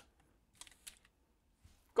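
Light plastic clicks and taps as a magnetic two-half Hot Wheels Split Speeders toy car is set into the plastic Ninja Chop launcher: a few faint, scattered clicks.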